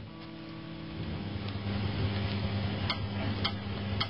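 Steady mains hum from an electric guitar rig, a low buzz with its overtones, rising slightly in level. About three seconds in come evenly spaced sharp ticks roughly half a second apart, a count-in leading into the backing track.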